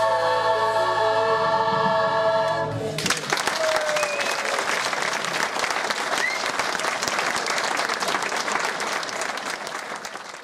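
A choir holding its final chord, cut off together about three seconds in, followed at once by audience applause with a few voices calling out over it; the applause fades near the end.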